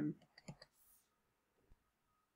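A few faint, short clicks about half a second in, then near silence.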